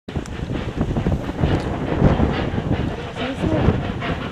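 Steam locomotives working hard up a steep gradient: a heavy, uneven chuffing exhaust, with wind buffeting the microphone.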